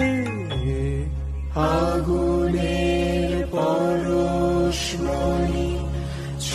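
Recorded Bengali devotional song: a voice sings long held notes with no clear words, the first falling away just after the start, over a steady low drone.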